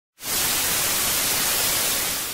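Television static: a steady hiss of white noise that cuts in a moment after the start.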